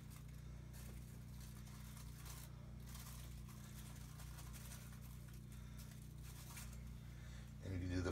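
Quiet kitchen room tone: a steady low electrical hum, with a few faint rustles and light handling noises.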